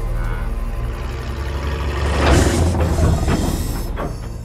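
Film score with a steady low drone. About two seconds in, a heavy truck comes in loud with a rumbling rush, the loudest sound here, easing off toward the end.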